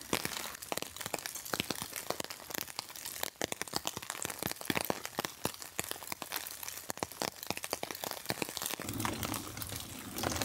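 An egg frying in oil in a small cast iron skillet, crackling and popping irregularly, with heavy rain pattering on the tarp overhead.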